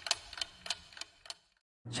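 A clock-like ticking sound effect, about three sharp ticks a second, stopping about a second and a half in.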